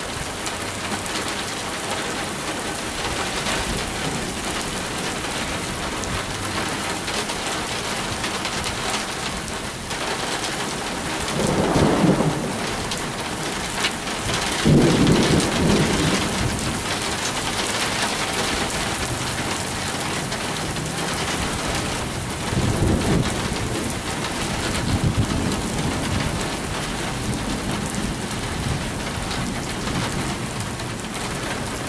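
Steady rain falling through a thunderstorm, with thunder rumbling several times over it. The loudest rolls come about halfway through, with weaker ones later on.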